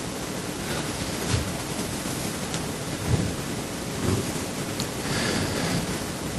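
A steady rushing hiss with a few faint, brief soft sounds in it: the background noise of the sanctuary recording, heard on its own in a pause between talk.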